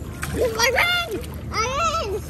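A child's high-pitched voice calling out twice over the splashing of swimming-pool water.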